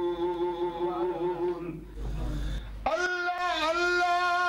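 A man's voice chanting a line of Persian poetry in long held notes. The first note breaks off about two seconds in, and after a short pause a new, slightly higher note starts near the end and is held.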